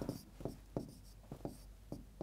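Hand writing on a board, a few short separate strokes a second, faint.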